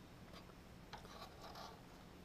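Near silence, with faint scratching and rubbing from about a second in as hands slide on the sawmill's clear plastic depth scale and take hold of its locking knob.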